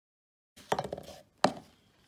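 Hard knocks of an object on a workbench: a quick rattle of knocks about half a second in, then one sharp, louder knock.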